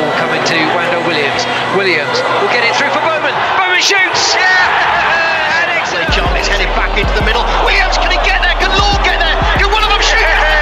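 Background music with voices over it; the low bass drops out at the start and comes back about six seconds in.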